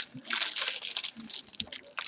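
Paper and packaging rustling and crinkling in irregular crackles as hands sort through craft supplies.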